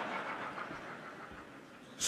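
A lecture audience laughing, the laughter fading away to near quiet over two seconds.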